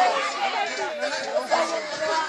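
Many children's voices at once, an overlapping babble of chatter.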